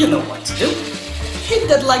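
Small humanoid robot's servo motors whirring and clicking in gear-like runs as it moves its head and arms, over background music with a steady beat.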